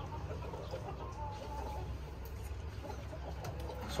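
Chickens clucking in the background, with a drawn-out call about a second in.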